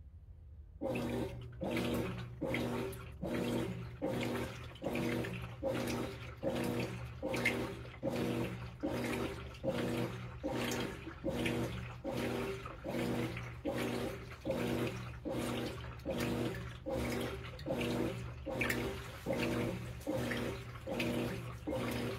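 Whirlpool WTW4816 top-load washer agitating a load in water on its Super Wash cycle. It starts about a second in, then keeps an even back-and-forth rhythm of nearly two strokes a second: a motor hum with each stroke and clothes sloshing in the tub.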